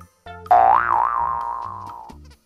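A cartoon "boing" sound effect about half a second in: a loud pitched tone that bends up and down in wobbles and fades out. Light bouncy background music runs under it.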